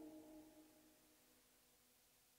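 The last sustained, ringing chord of an electronic techno track, several steady tones together, fading out over about a second into near silence.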